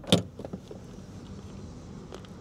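Car door unlatched and pushed open, with a sharp click near the start, then a steady background hum of the outside coming in through the open door.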